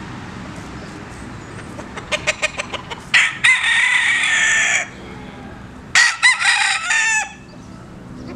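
Cuban gamefowl rooster calling: a quick run of short clucks about two seconds in, then two crows, one long and held just after three seconds, the other broken and falling off at the end about six seconds in.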